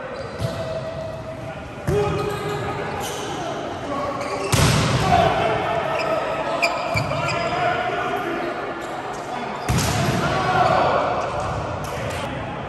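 Volleyball rally in a large gym: several sharp hits of the ball, the loudest about two, four and a half and nearly ten seconds in, each ringing on in the hall, with players' calls and shouts in between.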